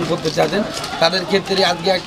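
Men talking, with birds calling in the background.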